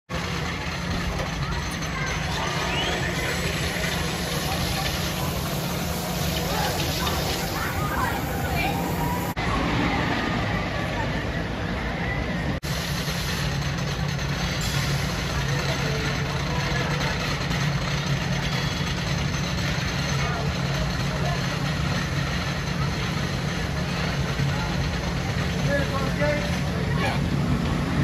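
Amusement park ambience: people talking over a steady low rumble and hum, with two brief dropouts about nine and twelve seconds in.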